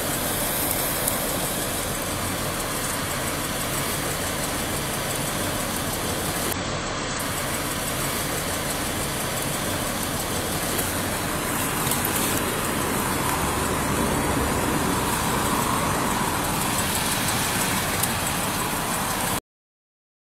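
Steady roadside noise of traffic and an idling car, which cuts off suddenly to silence near the end.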